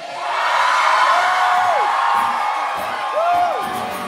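A small concert crowd cheering right after a song is announced, with two long whoops rising and then falling in pitch, one about a second in and one near three seconds.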